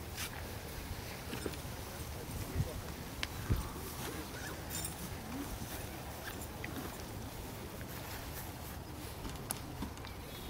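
Outdoor background of spectators' voices in faint, indistinct chatter, with a few small clicks and two short low thumps about two and a half and three and a half seconds in.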